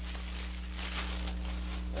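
A plastic bag being handled, crinkling irregularly, over a steady low electrical hum.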